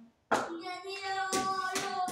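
A child's voice calling out in a long, drawn-out tone, with sharp claps or knocks cutting through it: one about a third of a second in and two more near the end.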